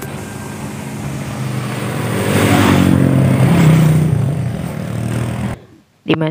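A motor vehicle passing close by on the road: its engine sound builds to its loudest around the middle, then eases off, and the sound cuts off abruptly near the end.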